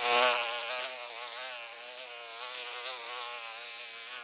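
A mosquito buzzing: a thin, whining hum whose pitch wavers up and down as it hovers. It is loudest at the start, then settles to a steady, quieter drone.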